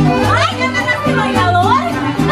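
Live mariachi band playing: violins and strummed guitars over a steady beat of bass notes. Excited voices call out high over the music, one sliding up in pitch about half a second in and another near the end.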